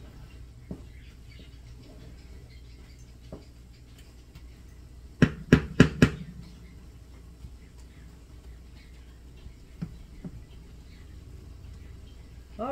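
Wooden spatula stirring ground turkey in a skillet, with four quick sharp knocks against the pan about five seconds in and one more near the end, over a steady low hum.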